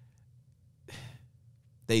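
A man's short breath, a single quick hiss of air about a second in, between phrases of speech.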